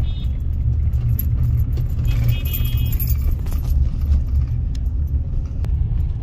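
Steady low road rumble of a moving car heard from inside the cabin, with light jingling clicks like loose keys over it.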